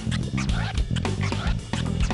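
A live band playing: a drum kit hitting fast strokes over a bass line, with a keytar synth lead whose notes bend in pitch.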